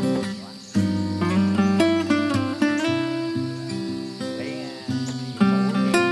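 Background music: acoustic guitar playing a run of plucked notes and chords, dipping briefly just under a second in.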